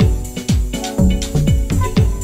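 Live electronic dance music from a laptop-and-controller set: a kick drum with a falling pitch about twice a second, ticking hi-hats and held synth chords.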